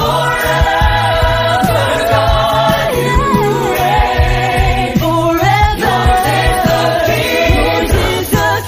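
A Christian devotional song: several voices singing together over instrumental backing with a steady bass.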